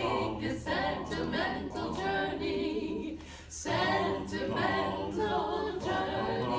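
Three women singing a cappella in harmony, with a short break in the singing about three and a half seconds in.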